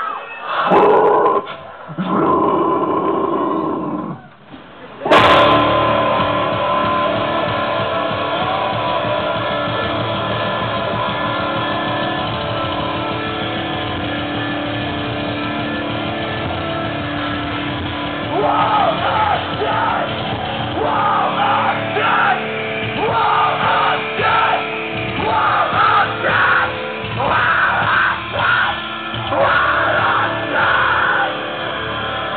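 Metalcore band playing live, recorded from the crowd: after a few seconds of shouting, the band crashes in about five seconds in with electric guitars holding loud sustained chords. A screamed and sung vocal line joins in about halfway through.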